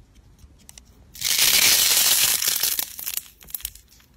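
Hands squeezing and pulling apart a soft squishy material, slime or a squishy toy, with a loud crackling, tearing noise lasting about a second and a half that starts about a second in, followed by a few soft clicks.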